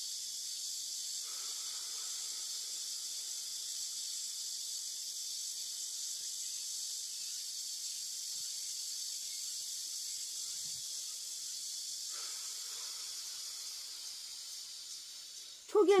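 Slow, deep breathing during a breathing exercise: a faint breath about a second in and another about twelve seconds in, over a steady high hiss.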